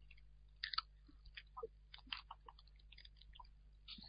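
Near silence with faint, irregular small clicks and ticks over a low steady hum.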